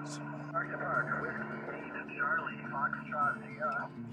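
Faint, narrow-band voices of amateur stations heard over an HF transceiver's speaker, with the thin, clipped sound of single-sideband reception over a low steady hum. They are callers answering the portable station.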